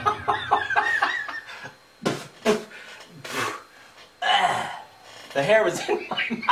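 A man laughing in a quick run of short bursts, followed by a few scattered short vocal sounds and exclamations.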